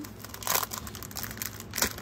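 Clear plastic packaging of a scrapbook paper kit crinkling under a hand, with a louder rustle about half a second in and another near the end.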